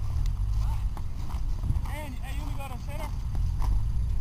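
Outdoor ballfield sound over a heavy low rumble on the microphone: voices calling out briefly around the middle, with scattered clicks and light footsteps.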